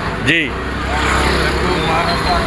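Busy street noise: a low, steady engine rumble from a nearby road vehicle starts about half a second in, under background voices, after a short spoken "ji".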